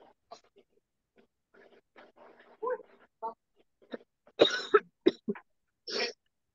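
A series of short, sharp vocal bursts coming through a video call's audio. They are scattered and faint at first, and the loudest come in a quick cluster about four and a half seconds in, with one more at the very end.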